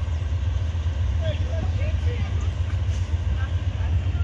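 Low, steady rumble of distant engines, with a few faint chirps over it about a second in.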